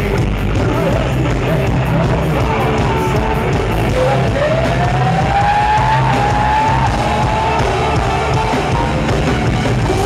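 Live rock band playing loud through a PA, heard from within the crowd: electric guitars, drums and a singer. Around the middle a long high note slides up and is held for a few seconds.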